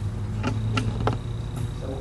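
Steady low room hum with three light clicks in quick succession about half a second to a second in.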